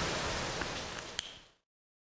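Faint room hiss fading down, with one short click a little over a second in, then dead silence as the audio track ends.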